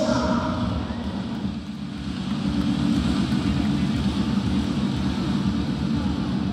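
Steady low rumble of crowd and hall noise in a packed gymnasium arena, with no clear single event standing out.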